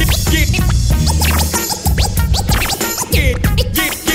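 Hip hop beat with a DJ scratching over it on Pioneer CDJ decks: quick back-and-forth pitch sweeps cut against a heavy bass line.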